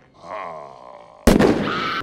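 A short, softer pitched sound, then a sudden loud blast of noise a little past halfway that keeps up as a harsh rush.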